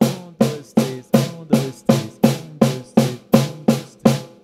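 Snare drum struck with sticks in an even, slow run of triplets, about three strokes a second and about a dozen in all, each stroke ringing briefly.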